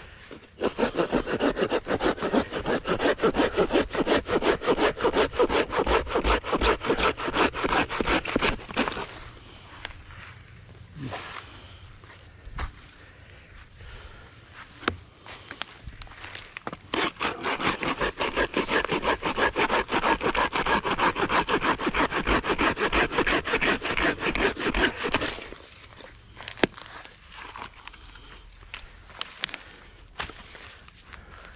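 Corona RazorTooth folding hand saw cutting through a dead pine log for firewood, with quick back-and-forth strokes. There are two long bouts of sawing, separated by a pause of several seconds with a few knocks.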